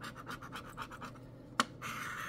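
A metal scratcher coin scraping the coating off a scratch-off lottery ticket in rapid short strokes, with one sharp click about one and a half seconds in.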